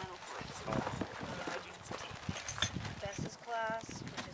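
People talking indistinctly in short snatches, with scattered light clicks and knocks in between.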